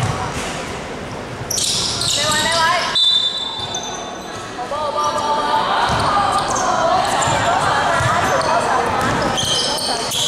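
Basketball bouncing on a hardwood gym floor, a few separate bounces, with players' voices calling out and echoing in the large hall.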